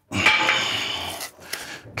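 A freshly split piece of riven wood is set down with a hard knock and a rattling clatter that fades over about a second, followed by a lighter knock near the end.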